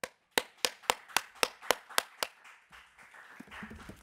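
One person clapping her hands alone near a lectern microphone: about eight quick, even claps, nearly four a second, stopping a little over two seconds in, followed by softer noise.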